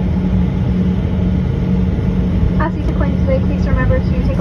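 Steady cabin drone of a jet airliner taxiing, heard from inside the cabin: a low rumble with a constant hum. A voice comes in about two and a half seconds in.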